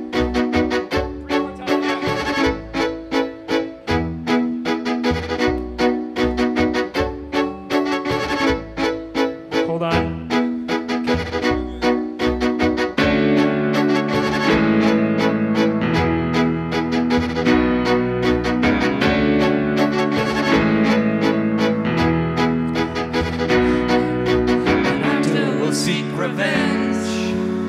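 Live instrumental intro led by a violin: short, rhythmic notes for about the first half, then fuller sustained chords come in about thirteen seconds in and the music grows louder, with no singing yet.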